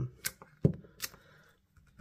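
A clear acrylic stamp block pressed down and handled on an envelope on a desk mat: three short, sharp taps within the first second, the middle one loudest.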